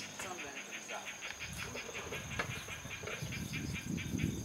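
Outdoor ambience: a rapid, even chirping, about five chirps a second, with a few gliding calls near the start and a low rumble coming in about halfway.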